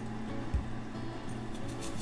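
Soft background music, with a few faint knife cuts through an apple onto a cutting board, one low thump about half a second in.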